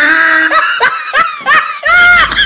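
People laughing hard: a drawn-out cry at first, then short bursts of laughter.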